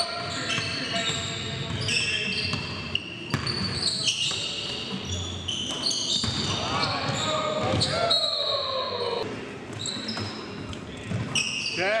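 Basketball game on a hardwood gym floor: the ball bouncing as it is dribbled, and many short, high sneaker squeaks. Players' voices call out now and then, echoing in the large gym.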